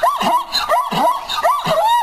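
Braying equine call, a quick run of hee-haw cries that rise and fall in pitch, two or three a second.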